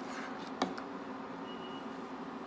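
Plastic spatula stirring thick, cooking chana dal paste in a ceramic-coated pot on an induction cooktop, with one sharp tap against the pot about half a second in. Under it runs a steady low hum, and a short faint high beep sounds near the end.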